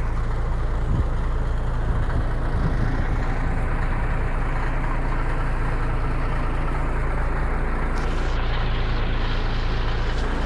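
A 1975 Peterbilt 359's diesel engine idling steadily, heard from inside the cab.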